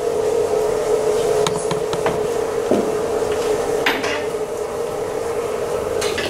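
Chalkboard eraser rubbed back and forth across a blackboard, a steady scrubbing with a few sharp knocks of the eraser against the board.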